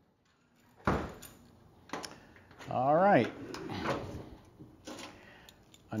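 A 1964 Chevrolet Chevelle's trunk being opened: a sharp latch clunk about a second in, then a few lighter knocks and a brief wavering pitched sound as the lid is handled.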